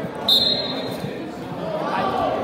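Referee's whistle, one short steady blast starting the wrestling bout, with shouting voices echoing in a large gym around it.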